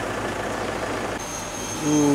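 Pickup truck engine idling with a steady low rumble. A thin high whine joins about a second in.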